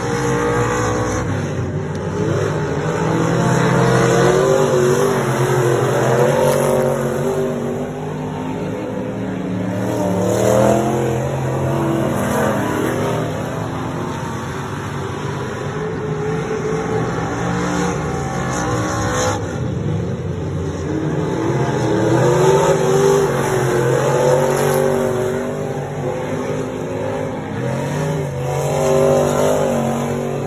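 Street stock race car engines running laps on a dirt oval, rising and falling in pitch over and over as the cars accelerate down the straights and lift for the turns.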